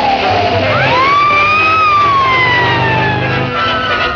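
Old cartoon soundtrack: orchestral music under whistling sound effects that slide in pitch. One long whistle falls away just under a second in, and a second one rises quickly, holds, and slowly sinks over the next few seconds.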